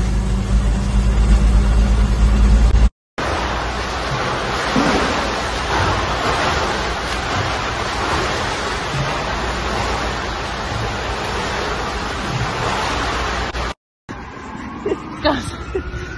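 Low, steady rumble of road noise inside a moving car's cabin, then after a short break an even rushing wash of water as someone swims in an indoor pool.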